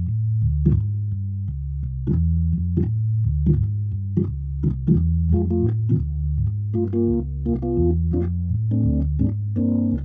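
Clavia Nord C2D clonewheel organ set to emulate a Hammond B-3, playing a slow blues. A low bass line steps along at an even pace, each note starting with a sharp key click. Chords join in higher up about halfway through.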